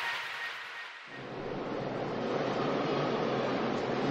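The fading tail of an electronic intro sting, then from about a second in the steady, even noise of a crowd in an indoor volleyball arena.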